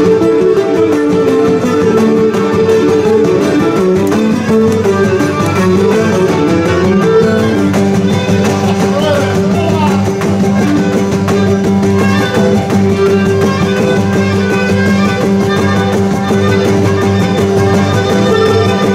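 Live Cretan folk dance music: a bowed string instrument plays the tune over strummed lutes. The melody winds up and down, then about halfway through settles onto steadier, held notes.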